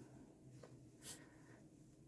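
Near silence with faint rustling of hands handling a doll's long hair, with one slightly louder brush about halfway through.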